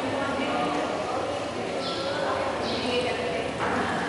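Many overlapping voices of a gathered crowd of people, a steady mixed hum of talk with no single clear speaker.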